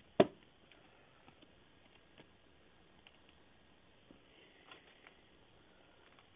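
A single sharp plastic click just after the start, then faint scattered ticks and light rustling of trading cards and hard plastic card holders being handled.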